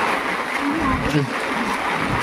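Heavy rain falling steadily on stone paving and on an umbrella overhead.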